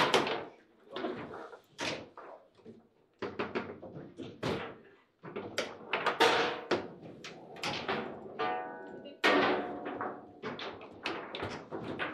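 Table football (foosball) in fast play: the ball knocking against the plastic player figures and the table's walls, with the rods clacking, in irregular sharp knocks throughout. A goal is scored during this stretch.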